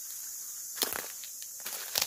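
Outdoor ambience with a steady high buzz of insects, broken by a few brief crackles of footsteps on dry leaf litter, the first about a second in.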